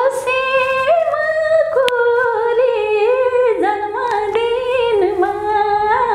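A woman singing a Nepali song unaccompanied, holding long notes and sliding between them, with a brief click about two seconds in.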